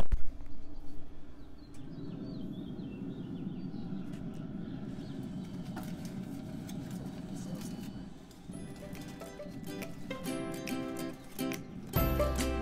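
A knock as the pellet grill's lid is opened, followed by a steady low rush, then background music with plucked strings comes in near the end.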